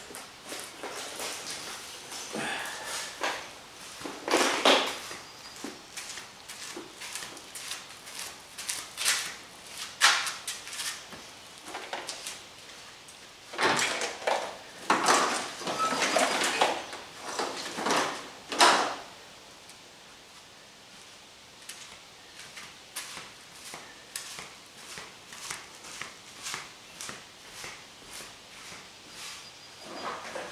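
Clicks, rustles and knocks of a car's wiring harness and its plastic connectors being handled and laid onto a removed dashboard, loudest in a busy stretch in the middle, then fainter, more regular ticks near the end.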